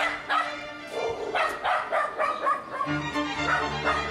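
A dog barking repeatedly over background music with sustained notes; a deeper bass line comes into the music about three seconds in.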